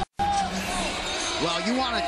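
Arena crowd noise, many voices shouting at once, over a low steady hum. The sound cuts out briefly at the very start.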